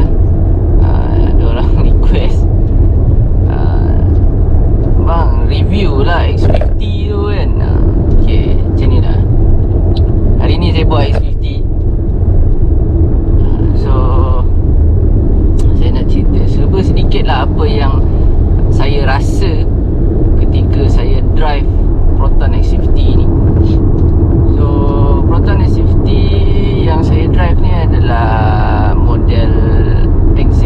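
A man talking on and off in Malay inside a moving car, over the steady low rumble of engine and road noise in the cabin.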